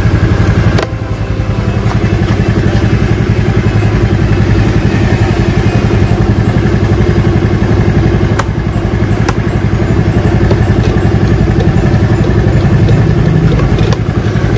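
Honda Vario 110 scooter's single-cylinder four-stroke engine idling steadily with its lights switched on, running on a newly fitted regulator rectifier. The level dips briefly about a second in, then holds even.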